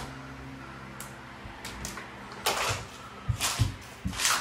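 A low steady hum with a few brief rustling noises, about two and a half and three and a half seconds in.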